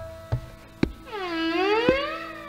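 Hindustani classical violin with tabla. A few sharp tabla strokes, some with a deep booming bass from the bayan, then about a second in the violin plays a long bowed note that slides down and climbs back up in pitch.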